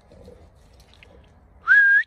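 One short, loud whistle near the end, with a pitch that slides up and then holds steady.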